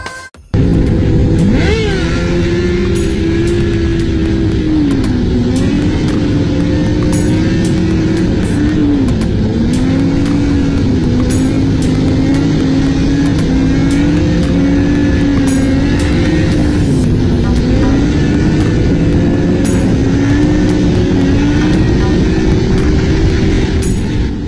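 Sports motorcycle engine running loud, its pitch rising and falling over and over as the throttle is worked; it cuts in about half a second in.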